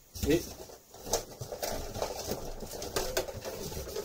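Boxes and packaging being rummaged on a high shelf: a run of short knocks, scrapes and rustles as a part is pulled down.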